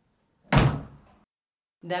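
A door shutting: one sudden loud knock about half a second in, dying away within a second.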